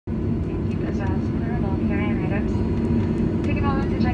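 A cabin PA announcement in a jet airliner's cabin, over the steady low rumble of the plane taxiing. The talking comes in two stretches, about a second in and again near the end.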